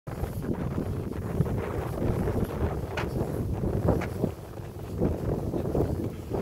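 Wind buffeting the microphone outdoors, a steady low rumble with a few short crackles scattered through it.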